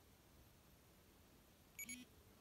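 Near silence, then near the end a short electronic beep from a Polar Grit X sports watch, signalling that the held stop button has ended the training recording.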